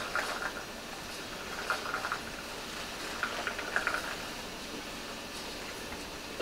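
Quiet room hiss with a few faint, brief rustles and clicks from handling instruments and sterile packaging.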